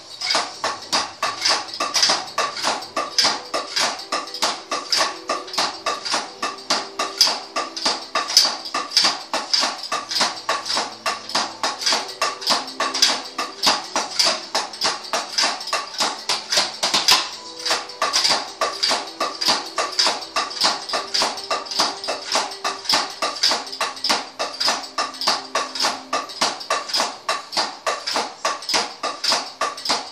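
Drumsticks striking the rubber pads and cymbals of a Roland electronic drum kit, heard unamplified as a steady, fast rhythm of hollow taps and clacks.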